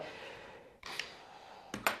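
A pause in a man's speech: faint room tone with a faint short sound about a second in, then a quick intake of breath just before he speaks again.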